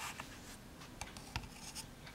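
A few faint light clicks and scratchy rubbing as a small fixed-blade knife is handled and set down on the stainless steel platform of a digital pocket scale.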